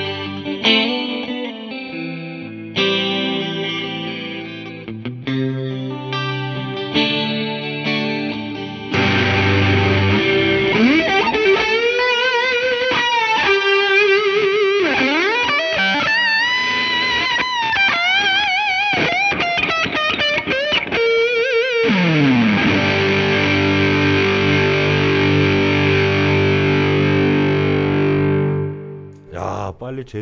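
Sterling by Music Man AX3FM electric guitar played through a Fender Twin Reverb with pedal effects. It opens with about nine seconds of strummed chords, then a louder, distorted lead line with wide vibrato, bends and steep pitch dives. It ends on a held chord that cuts off just before the end.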